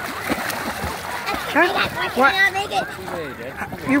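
Water splashing from a child's swimming strokes in shallow lake water, fading after about a second and a half, when voices take over.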